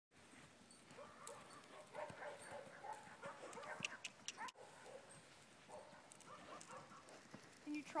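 Faint, indistinct voices of people talking in the background, with a few brief, sharp, high sounds about four seconds in.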